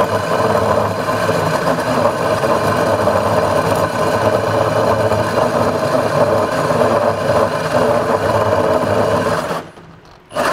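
Milwaukee M18 FUEL Super Hawg cordless right-angle drill with its brushless motor running under load, driving a 6-inch Big Hawg hole saw through a kiln-dried two-by-ten. A steady loud whirring grind of motor, gearing and saw teeth in wood, briefly cutting out near the end.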